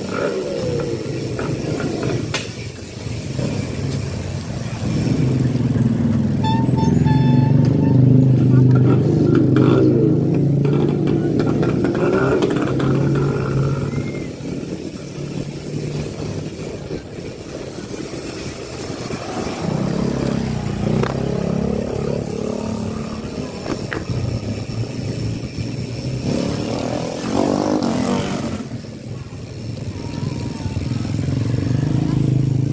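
Motorcycle engines running as they pass close by on a street, loudest about a third of the way in and again later on.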